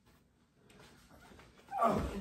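Faint scuffling, then a short, loud yelp near the end.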